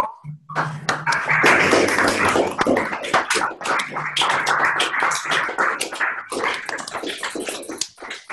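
A group of people clapping through their own video-call microphones: many scattered, overlapping claps, with a cough among them and a steady low hum underneath. The applause starts about half a second in and thins toward the end.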